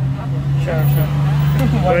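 Engine of a nearby motor vehicle running at idle: a steady low hum in street traffic, with voices over it near the end.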